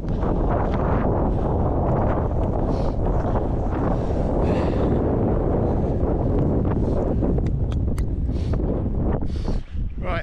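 Wind buffeting a handheld camera's microphone on an exposed mountain ridge: a steady, loud low rumble.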